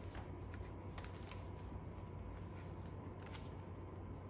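Pages of a large book being turned by hand: soft paper rustles and flicks, several in the first second and a half and one more near the end, over a steady low hum.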